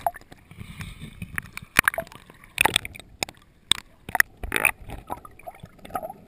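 Water sloshing and gurgling around a GoPro camera's housing as it moves through the surface and underwater with a swimmer's strokes. Irregular sharp splashes and knocks come throughout.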